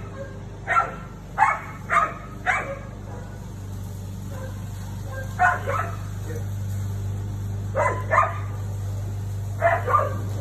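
Siberian husky barking at a cat: four quick barks in the first three seconds, then short pairs of barks spaced a few seconds apart.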